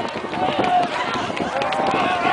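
Many children's voices shouting and squealing at once, overlapping, with a few short knocks mixed in.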